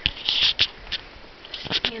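Handling noise as a phone camera is picked up and moved: a rustle and scrape about half a second in, with a few sharp clicks and knocks, two of them close together near the end.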